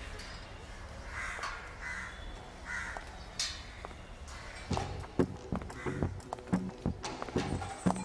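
Crows caw three times over a steady outdoor background. About halfway through, the film's percussive score comes in with sharp, irregular strikes.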